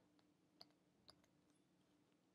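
Near silence: faint room tone with a low steady hum and a few very faint clicks.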